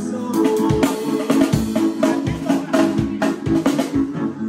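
A live band playing with a drum kit: a steady beat with a bass drum about every three-quarters of a second and sharp snare and cymbal strikes between, over held chords.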